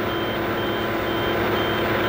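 Rotary snowblower's heavy diesel engine running steadily under load, with a vehicle reversing alarm beeping about twice a second.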